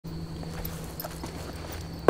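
Low background rumble with a faint steady hum and a few scattered light clicks or taps.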